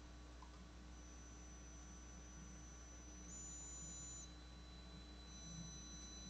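Near silence: faint steady background hum with thin, high-pitched whining tones from the recording's noise floor.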